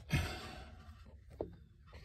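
A man's breathy sigh that fades over about half a second, followed by a single faint click about a second and a half in.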